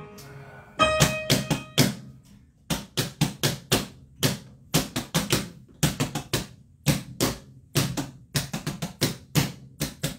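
A piano chord about a second in, then a run of sharp percussive taps in a loose, uneven rhythm, about two to three a second.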